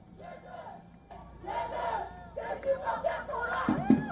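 Crowd cheering and shouting, many voices overlapping; it grows louder about a second in.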